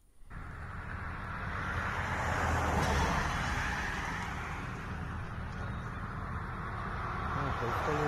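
Outdoor sound of bystander phone footage of a night-time crash scene, heard as a steady rushing noise that swells about three seconds in, with a man's voice coming in near the end.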